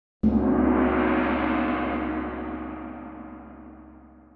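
A single gong strike about a quarter second in, ringing out loud and then slowly fading over the following seconds.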